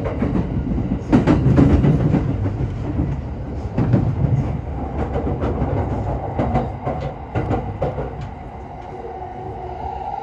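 A passenger train running, heard from inside the car: steady low running noise with the wheels knocking over rail joints. Near the end the knocking thins out, the noise drops, and a steady whine comes in.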